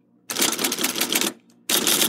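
Rapid clatter of typing keys in two runs of about a second each, with a short pause between.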